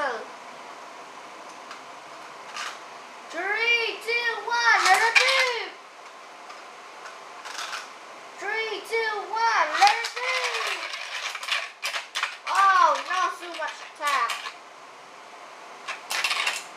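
Metal Beyblade spinning tops clicking and clattering against each other and the plastic stadium, with a launcher being handled. A child's wordless, rising-and-falling vocal sounds come in three spells over the clicks.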